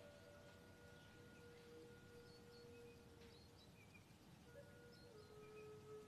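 Faint, slow meditative music: sustained bell-like tones held for a few seconds each, stepping to a lower note about five seconds in.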